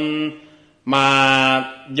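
Speech: a monk's voice drawing out two syllables in long tones held at a level pitch, almost chanted.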